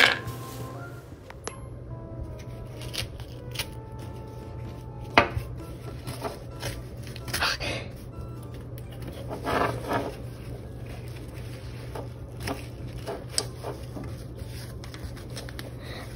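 Painted seashells and a paper towel being handled on a desk: scattered taps, scrapes and rustles as the paper towel is peeled off shells stuck to it with wet paint, over a steady low hum.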